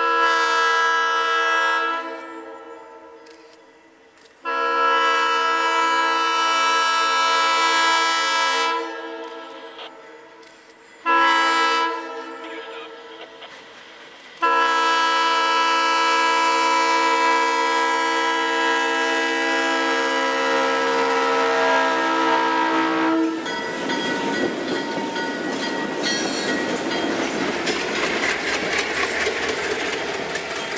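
Alco diesel locomotive's multi-chime air horn blowing the grade-crossing signal as the train approaches: two long blasts, a short one, and a final long one held for about nine seconds. The locomotives then pass close by, their diesel engines running under a dense rumble with wheels clicking over the rail joints.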